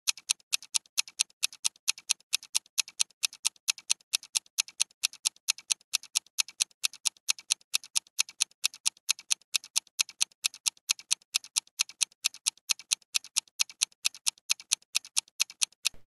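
Clock-ticking sound effect marking a countdown timer: fast, even ticks, alternating louder and softer.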